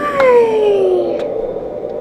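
A woman's drawn-out, high singsong "hi" that falls slowly in pitch over about a second, with a couple of light clicks.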